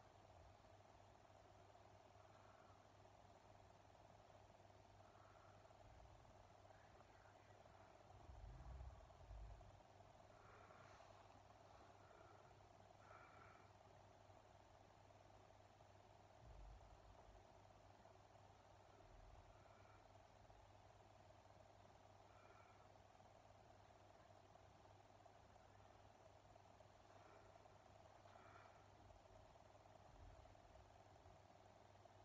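Near silence: faint steady room hum, with a few soft low bumps about eight to nine seconds in and again near sixteen seconds.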